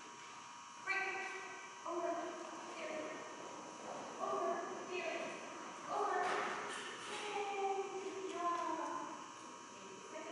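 A handler's voice calling short commands to a dog running an agility course, one brief call about every second, faint and distant.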